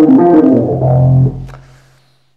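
A short electric-piano phrase in a Rhodes sound, played on a Nord Stage 3: a few stepping notes, then a low held note that fades away about a second and a half in.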